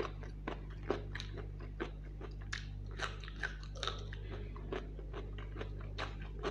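Close-miked chewing and biting of food, with irregular short mouth clicks a few times a second, over a steady low hum.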